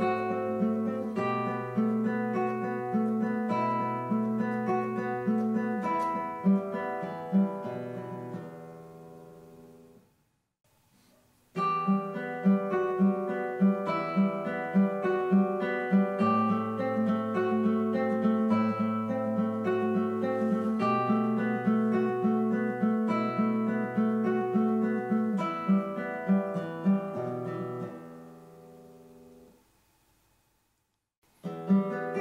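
Nylon-string classical guitar played fingerstyle: a steady run of plucked notes in a repeating octave exercise pattern that rings and dies away about ten seconds in. After a silence of about a second and a half, a second similar passage starts and fades out near the end.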